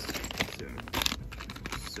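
Plastic blind-bag packets crinkling as they are handled, in quick irregular rustles.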